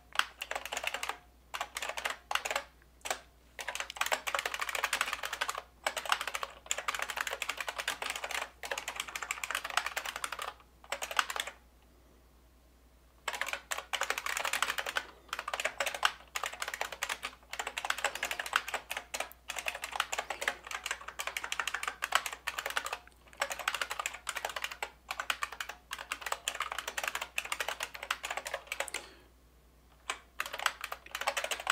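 Computer keyboard typing in quick runs of keystrokes, with a pause of a second or two about twelve seconds in and a brief stop just before the end.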